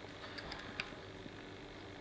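A few faint small clicks as a crimped metal terminal and plastic connector block are handled, over a faint steady hum.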